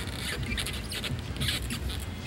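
Murmur of a large arena crowd, with short high-pitched squeaks and patters scattered through it.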